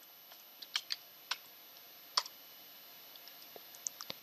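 Computer keyboard keystrokes: a handful of separate key presses, spaced out and unhurried, with a few fainter taps near the end, over a faint steady high whine.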